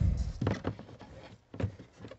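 A hand handling things inside a homemade cardboard incubator box: a low bump right at the start, then scattered small knocks and rustles.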